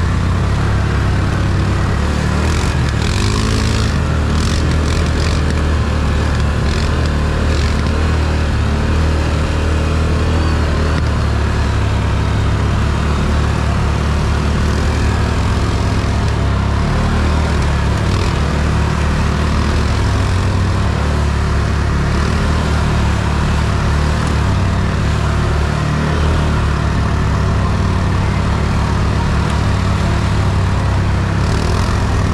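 Can-Am ATV engine running steadily as the quad rides a rough trail, heard from on board. A few short scratchy noises come in the first several seconds.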